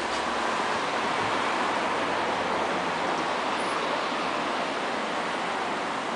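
Steady outdoor background noise: an even rush with no distinct events.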